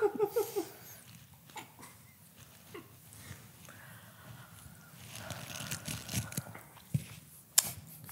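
Brief laughter at the start, then faint scraping and tearing of orange peel as a small peeler blade is drawn through the rind, with a few soft clicks as the peel is handled.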